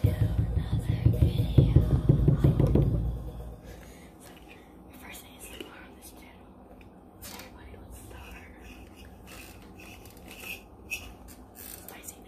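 A loud, close, low rubbing noise for the first three seconds or so, then forks clicking and scraping on a plate of instant noodles amid soft whispering.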